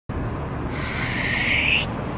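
Low outdoor traffic rumble, with a hiss that swells for about a second and cuts off abruptly.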